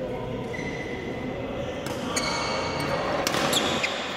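Badminton rackets striking a shuttlecock in a doubles rally: sharp cracks from about two seconds in and again past three seconds, with short shoe squeaks on the court floor, over a steady hubbub of an echoing hall.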